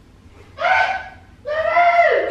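A woman calling to a cat in a high, drawn-out sing-song voice, twice, the second call longer and falling in pitch at the end.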